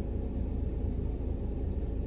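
Steady low rumble inside a stationary car's cabin, with a faint even hiss above it.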